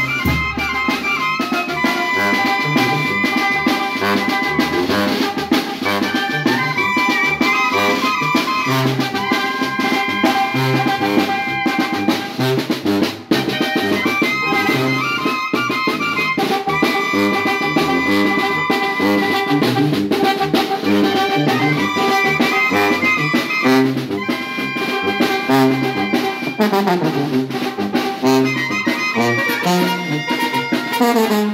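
A Oaxacan village wind band (banda) playing: clarinets, trumpets, trombone and sousaphone over a drum kit with cymbals keeping a steady beat. The music briefly drops out about 13 seconds in.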